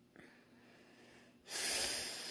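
Near silence, then about one and a half seconds in a sudden loud, raspy breath through a congested nose, from a girl with a cold and a runny nose; she calls her breathing terrible.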